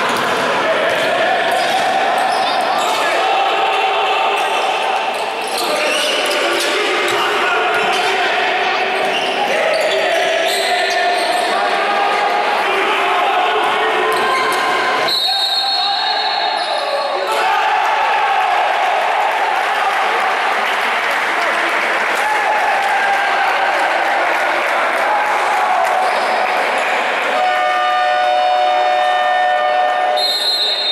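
Basketball being dribbled and bounced on a hardwood court in an echoing sports hall, under the shouts of players and bench. About halfway through a referee's whistle blows for about two seconds, and near the end a steady electronic horn sounds for a few seconds.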